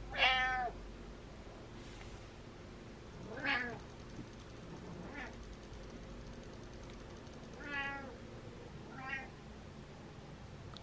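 Domestic cat meowing: five meows spaced one to three seconds apart, the first the loudest.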